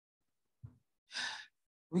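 A short breath, a sigh-like exhale, about a second in, after a faint click. Otherwise silence, with a spoken word starting right at the end.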